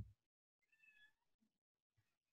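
Near silence, with one very faint, short high-pitched call a little under a second in.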